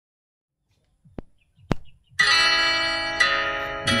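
Two short clicks, then a sustained instrumental chord that rings and slowly fades, freshened by another chord about three seconds in: the opening accompaniment just before the singing starts.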